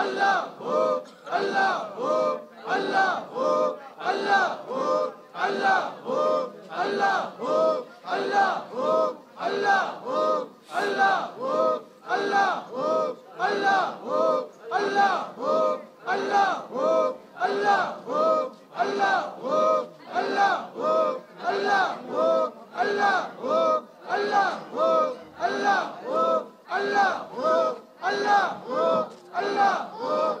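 A group of men chanting zikr in unison, with a short, forceful call repeated evenly about twice a second in a steady rhythm throughout.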